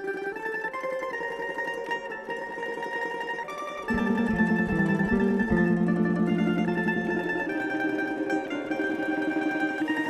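Tamburica band playing an instrumental intro on plucked tamburice with a double bass (berde). Lower notes come in and the music grows fuller and louder about four seconds in.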